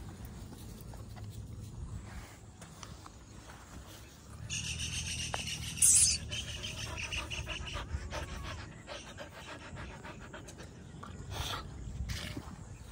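A dog panting, with a brief sharper noise about six seconds in.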